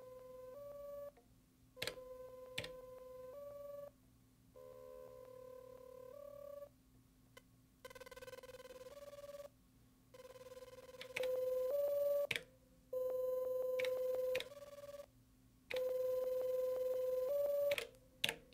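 Elektron Octatrack MKII sampler playing a simple looping sequence of beep-like synth tones: a held note that steps up a little at the end of each phrase, repeating about every two seconds with short gaps between. The sequence gets louder about ten seconds in.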